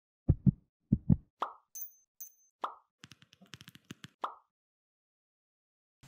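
Intro sound effects for an animated logo: two deep double thumps like a heartbeat, then a few short plops, two brief high pings and a quick run of ticks. The sounds are spaced apart and stop about four and a half seconds in.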